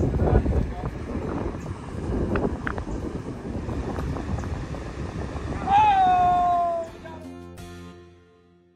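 Wind buffeting the microphone over river water. About six seconds in comes one short, loud, high-pitched shout that rises and then falls, followed by a held music chord that fades out.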